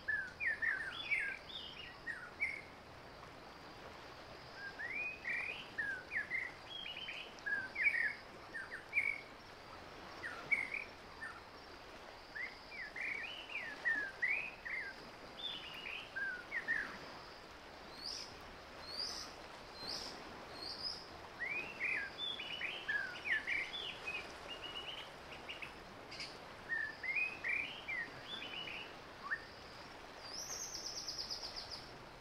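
Birds chirping and singing in quick clusters of short rising and falling notes every few seconds, with a few higher notes about two-thirds of the way through, over a faint steady hiss.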